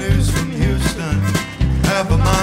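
Live country band playing an up-tempo song: acoustic guitar, fiddle and drums, with a steady, strongly pulsing beat.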